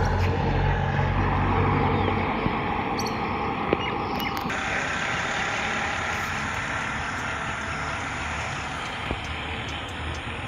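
A motor vehicle passing on the road, its low engine hum dying away about two seconds in. A steady road-noise hiss follows and slowly fades.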